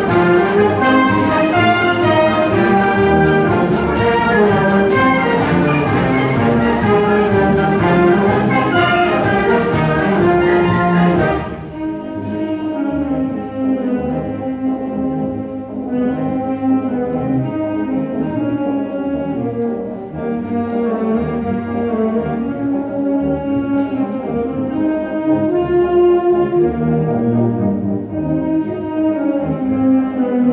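Concert band of brass and woodwinds playing. The full band plays loud for about the first eleven seconds, then drops suddenly to a softer, quieter passage.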